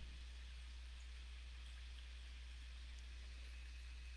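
Faint room tone: a steady low hum under an even background hiss, with no distinct sound events.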